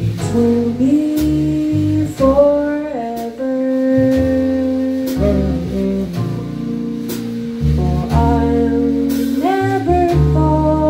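Live small-combo jazz ballad: a female voice sings slow, held, sliding notes into a microphone over double bass, keyboard and drum kit.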